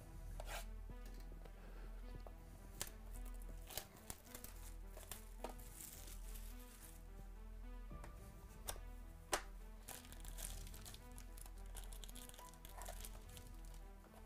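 Plastic shrink wrap being torn and crinkled off a cardboard trading-card box, with several sharp crackles and snaps, over background music with a steady beat.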